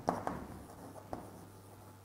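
Chalk writing on a chalkboard: a few sharp taps as the chalk strikes the board near the start and about a second in, with faint scratching between strokes.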